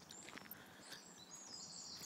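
Quiet outdoor ambience: faint high bird chirps and a few soft ticks, with no clear main sound.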